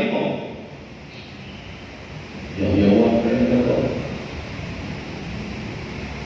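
A man's voice through church loudspeakers, one drawn-out phrase of the homily near the middle, with pauses of steady low background noise on either side.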